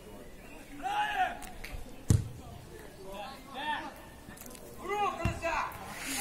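Two sharp thuds of a football being kicked, the first about two seconds in and louder, the second a little after five seconds, with a few short shouted calls from men on the pitch around them.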